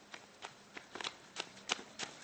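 Running footsteps crunching on gravelly dirt: a run of irregular crisp steps, about three or four a second.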